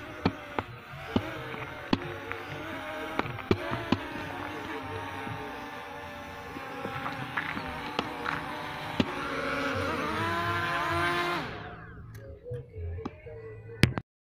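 Propellers of an S1S quadcopter drone whining on several tones, with sharp clicks scattered through the first half. About ten seconds in the tones slide up and down apart, then the sound cuts off abruptly.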